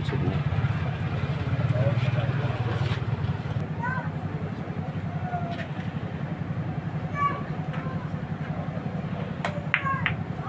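A steady low engine drone, like a motor idling nearby, with faint voices over it and one sharp click near the end.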